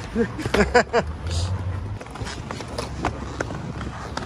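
Skateboard wheels rolling over concrete, a steady low rumble with scattered clicks and knocks from the board. A few short vocal sounds come in the first second.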